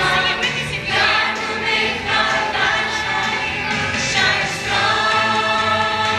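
A large group of young children singing a song together, over musical accompaniment with steady low bass notes.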